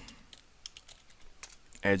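Computer keyboard typing: a quick run of light, separate keystrokes as a word is typed in.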